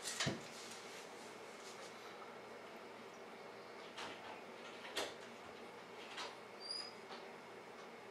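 Faint clicks and light taps of wooden tower-game blocks as a block is nudged and slid out of the stacked tower: a few sharp separate clicks, about a second apart in the second half, over quiet room tone.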